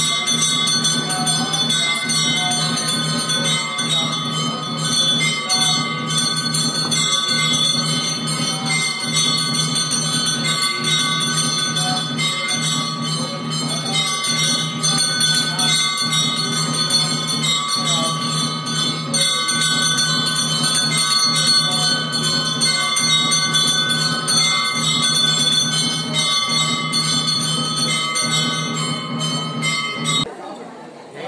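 Temple puja bells ringing continuously, a dense, sustained metallic ringing over a low, evenly pulsing beat.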